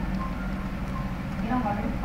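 Faint, indistinct background voices over a steady low hum.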